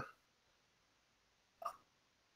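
Near silence, broken once about one and a half seconds in by a single brief short sound.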